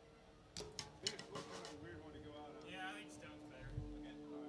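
Quiet between-song stage sounds from a live band: a few sharp clicks and taps about half a second to a second and a half in, two steady instrument notes held and ringing on, and faint voices.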